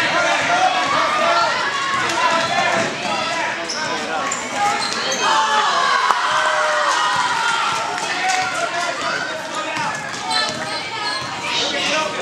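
Basketball being dribbled on a hardwood gym floor during play, under a continuous mix of spectators' voices.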